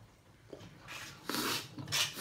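Eating sounds from a man working through a mouthful of Samyang spicy noodles: quiet at first, a faint click about half a second in, then about a second of noisy breaths and mouth sounds while he struggles to finish the dish.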